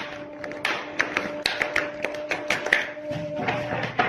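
A quick, irregular run of light taps, several a second, over a steady two-note drone.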